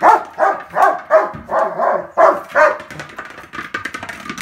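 German Shepherd barking in a rapid run of short barks, about three a second, that stops after about two and a half seconds, followed by a few sharp clicks.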